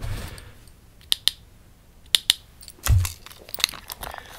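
Sharp clicks and taps close to the microphone, from props being handled, mostly in quick pairs about a second apart, with a duller thump just before three seconds in.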